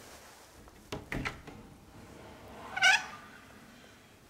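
A wooden cabinet door being opened: the latch and door click and knock about a second in, then the hinge gives a short rising squeak near three seconds, the loudest sound.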